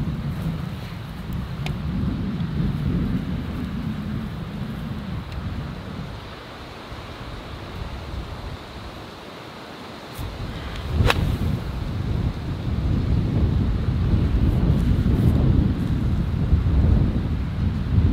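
Wind rumbling on the microphone, then about eleven seconds in a single sharp crack of an iron striking a golf ball off fairway turf; the shot is struck thin.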